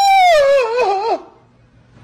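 A woman's high-pitched wailing scream: one long cry that falls and wavers in pitch for about a second, then breaks off.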